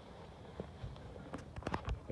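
Quilted fabric dog seat cover rustling as it is folded up and pulled off a car's back seat, with several sharp clicks and taps in the second half.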